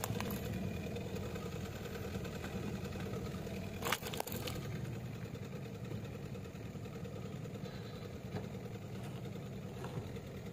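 Car engine idling steadily, with one sharp crack about four seconds in as the plastic toy breaks under the tyre.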